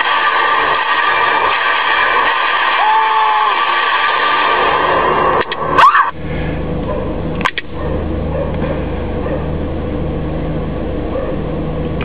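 Soundtrack of a film clip playing through a GPS unit's small built-in speaker, mostly a dense hiss with a short tone about three seconds in. It stops just before halfway with a sharp click, a second click follows, and then only a steady low hum and noise remain.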